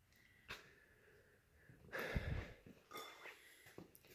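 Quiet stretch with a single click about half a second in and a short breath close to the microphone about two seconds in, followed by a few faint ticks.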